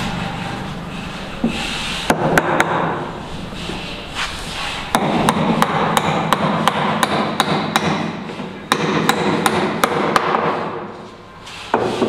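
Hammer blows on the timber yoke of a wooden column formwork box. A few sharp strikes come about two seconds in, then a steady run of about three a second for some five seconds.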